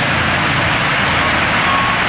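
White stretch limousine driving slowly past, its engine and tyres heard under a steady, even rushing noise.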